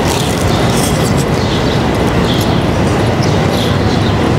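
Loud, steady city street noise: a continuous rumble and hiss with no distinct single event standing out.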